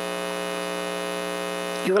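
Steady electrical mains hum, a continuous buzzing tone with many overtones, carried on the microphone and sound system between sentences; a woman's voice comes back in right at the end.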